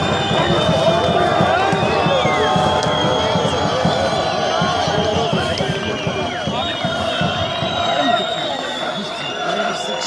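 A football crowd shouting, with many voices yelling over one another at a steady, loud level.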